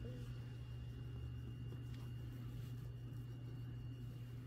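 Steady low hum with a thin, faint high-pitched whine: room tone, with no clear sound of the brush.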